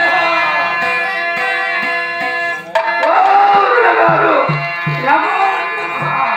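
Folk-theatre accompaniment: a harmonium holding steady chords under a voice in long, bending sung phrases, with three low hand-drum strokes about four to five seconds in.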